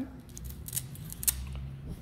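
Hook-and-loop fastener on a folding fabric solar panel being pulled apart as the panel is opened, with a few short ripping sounds around the middle.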